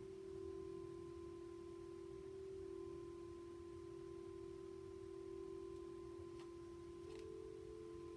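Faint ambient background music of steady sustained tones; a slightly higher tone comes in near the end.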